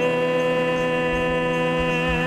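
A man's voice holding one long, steady sung note, the end of the song's last line, over a bass guitar's sustained low note.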